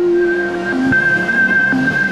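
Music of a news channel's logo ident: a long held high tone over softer sustained notes, with a click right at the start.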